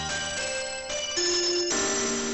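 Music broadcast on 97.9 MHz FM and heard through a software-defined radio receiver: a simple melody of steady held notes, changing pitch a few times.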